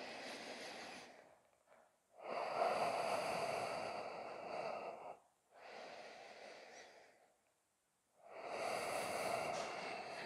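A man's slow, deep breathing: four long breaths, the second about three seconds long, with short silent pauses between them.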